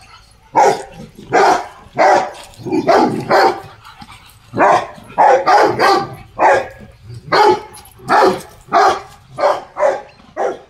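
Rottweilers barking repeatedly at an ox, loud short barks coming about two a second, with a brief pause a little before the middle.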